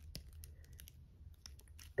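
Faint, scattered light clicks and taps of small plastic action-figure accessories being handled and picked up from a table, over a low steady hum.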